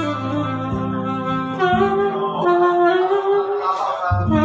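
Saxophone playing a slow, held melody line, a few sustained notes with the longest one wavering in a light vibrato, over a backing accompaniment.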